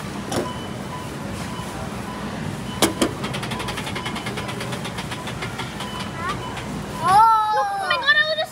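Arcade prize-wheel game spinning down with rapid, even ticking, after a sharp click about three seconds in. A loud excited voice breaks in near the end as the wheel stops.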